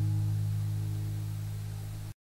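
Last chord of a capoed acoustic guitar ringing out and fading, the low notes lasting longest.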